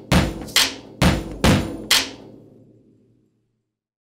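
Percussive intro sting: five sharp hits about every half second, each ringing briefly, the last ringing out and fading away about three seconds in.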